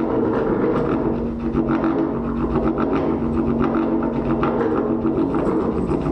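Valved brass instrument played through long extension tubes ending in flared bells, holding a low, didgeridoo-like droning note with a fast, even pulsing over it.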